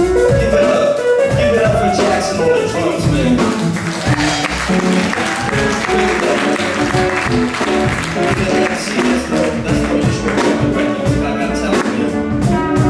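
Live jazz band playing: a trumpet line over drum kit, upright bass and guitar.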